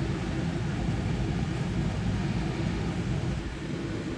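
Steady low rumbling kitchen background noise with a faint hiss and no distinct events.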